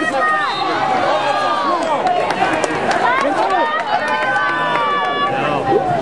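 A crowd of spectators yelling and cheering over one another, with one voice holding a long high shout about three and a half seconds in.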